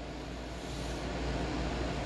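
Steady background hum with an even hiss, like shop ventilation or machinery running; no distinct event stands out.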